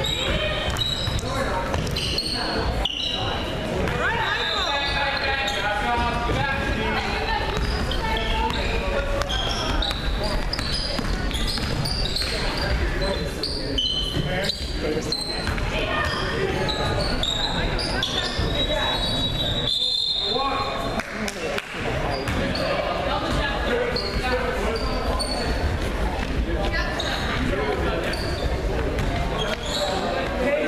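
Basketball game in a gym: a ball bouncing on the hardwood court, sneakers squeaking, and players and spectators calling out, all echoing in the large hall.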